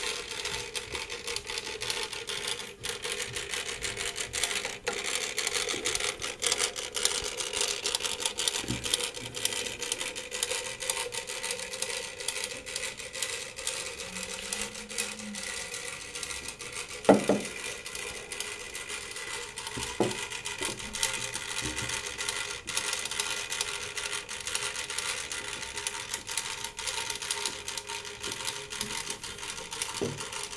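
Clockwork motor of a toy liner running, a rapid continuous ticking over a steady hum as the spring unwinds. One sharp knock about halfway through.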